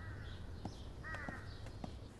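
Crows cawing faintly, one call at the start and a pair of calls about a second in, over a low steady background hum and a few faint clicks.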